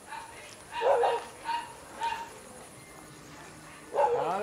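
A dog barking: three short barks about a second in, each about half a second apart.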